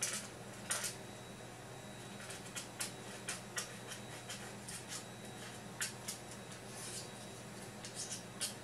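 Short, irregular scraping strokes of a small hand tool along the plastic edge of a remote control's case, deburring the edge that was chipped when the case was pried open. A low steady hum runs underneath.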